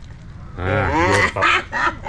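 Domestic goose honking: a run of close, loud, pitched calls beginning about half a second in.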